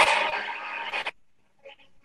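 Sound of a Formula One pit-stop clip played over a video call: a loud rush of noise that fades and cuts off about a second in, then only faint scraps of sound.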